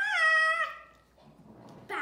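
A child's high, wordless vocal sound, held for about half a second near the start and falling slightly in pitch, followed near the end by a brief, lower voice sound.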